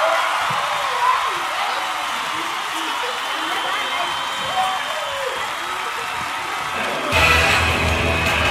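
A hall full of children talking and calling out at once, a busy babble of voices. About seven seconds in, music with a strong bass comes in suddenly.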